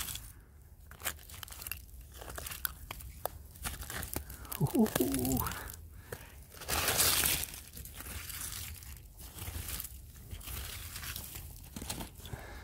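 Gloved hand scraping and pulling at loose soil and fine roots around a buried stone ginger beer bottle: irregular crumbling and crunching scrapes, with a longer scrape about seven seconds in.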